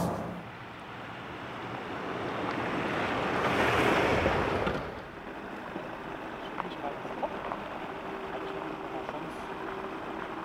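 A rushing, wind-like noise swells and falls away about five seconds in. Then the Ford Ranger Raptor's diesel engine runs with a faint steady hum as the pickup rolls slowly along a dirt track, with a few small crunches.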